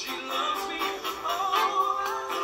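A man singing a pop song with a backing band, the words "She said she loves me… Oh, that's heaven to me," played back through a laptop's speakers.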